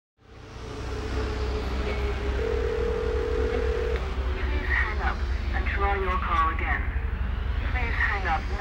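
Telephone-line audio: a steady low hum with a single held tone for about a second and a half. A voice then comes in about five seconds in.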